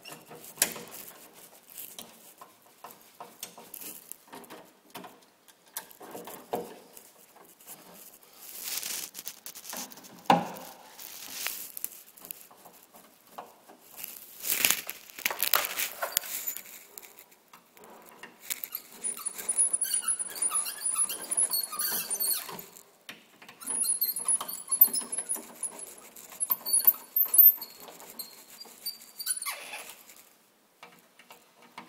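Screwdriver turning a wall receptacle's mounting screws into the electrical box, with irregular scraping and clicks from the tool, the receptacle and gloved hands. Short high squeaks come in the second half.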